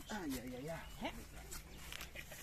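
Speech: a person's voice making short utterances, with no other clear sound standing out.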